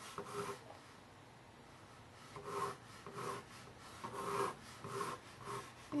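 Pencil sketching on a canvas board: quiet at first, then about seven short scratchy strokes in quick succession through the second half as a curve is drawn.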